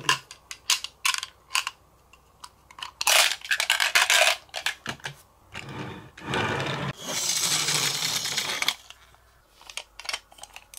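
Marbles clicking and clattering as they are tipped from a toy dump truck onto a wooden slope, then rolling down its wavy wooden groove in a long rattling run that stops near the end, followed by a few light clicks.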